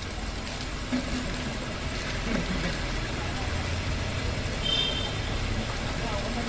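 Steady low rumble and hiss of background noise with faint distant voices, and a brief high-pitched tone about five seconds in.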